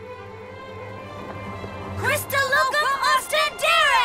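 Cartoon soundtrack: held background music, then from about halfway a quick run of bright swooping tones, each rising and falling, as a magic-spell sound effect.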